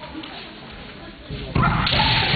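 Low hall murmur, then about one and a half seconds in, loud, drawn-out kiai shouts from the kendo fencers as the bout starts.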